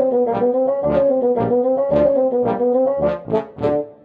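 Music cue: a long held brass note that wavers slightly in pitch over a steady drumbeat. The drum hits come quicker near the end before the music dies away.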